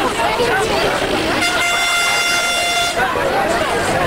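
A vehicle horn sounds one steady blast lasting about a second and a half, over the chatter of a crowd.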